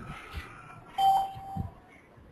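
Electronic notification chime: a single steady tone, held for just under a second, about a second in.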